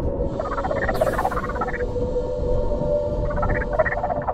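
A heavily processed, non-human voice speaking an unintelligible language in two phrases, one early on and one starting just before the end, over a dark, droning film score with a steady held tone and a low rumble.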